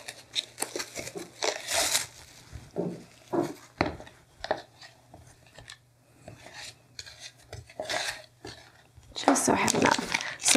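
A spatula scraping and clinking against a bowl as buttercream is loaded into a plastic piping bag, in irregular scrapes and taps, with the bag crinkling near the end.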